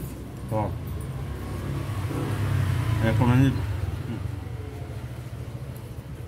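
A road vehicle's engine going past, its low hum swelling to its loudest about three and a half seconds in and then fading, with a couple of short murmured voice sounds over it.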